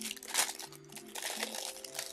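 Clear plastic packet holding a nail-degreasing prep pad crinkling as it is handled, mostly in the first second, over soft background music.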